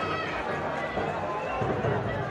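Several voices calling and talking over each other on a football pitch, over steady stadium background noise.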